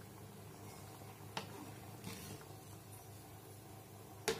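Faint kitchen sound of a steel ladle stirring curry in a steel kadai, with two light clicks of the ladle against the pan about a second and a half and two seconds in, over a steady low hum.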